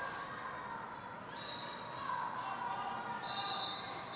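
Roller derby referee whistles over the noise of the rink hall, signalling that the jam has been called off: one short blast about a second and a half in, then a longer blast starting near the end.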